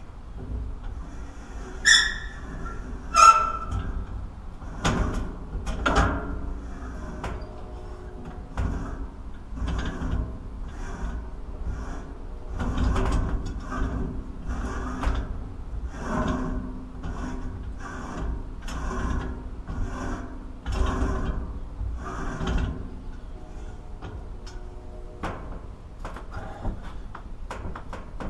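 Metal hand-crank pump being screwed into a container: two ringing metal clanks early on, then a repeated scrape and knock about once a second as the pump's tube is turned into the threaded opening.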